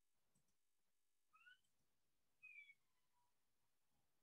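Near silence, broken by two faint, short, high-pitched animal calls about a second apart, the first rising in pitch and the second falling.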